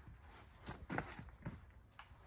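Quiet room tone with a few faint, short clicks.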